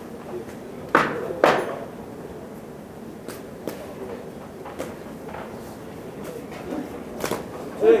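Boxing gloves landing two sharp blows about half a second apart, about a second in, followed by a few lighter knocks, over a steady murmur of voices.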